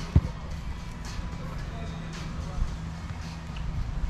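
Camera handling noise: a single dull bump on the microphone just after the start, then a steady low rumble as the camera is moved.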